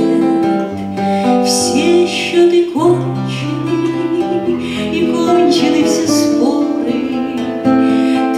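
A classical guitar strummed and picked in a passage of a Russian bard song where no words are sung, with another plucked guitar alongside.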